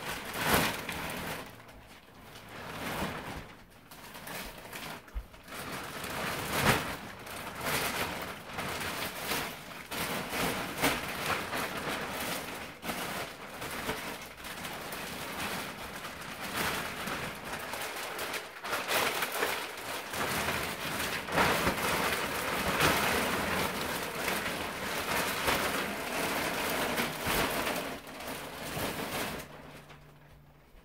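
Thin clear plastic wrap crinkling and rustling as it is pulled and bunched off a foam mattress topper. It is a continuous crackle with a few brief lulls.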